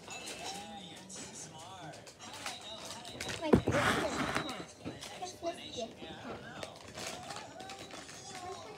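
Music with voices playing in the background. About halfway through comes a sudden bump against the microphone, then a second of loud rustling as a plastic snack bag is handled right at the microphone.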